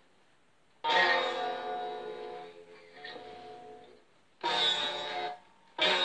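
Electric guitar strummed across all its strings three times: the first strum, about a second in, rings out for a few seconds; the other two, near the end, are cut shorter.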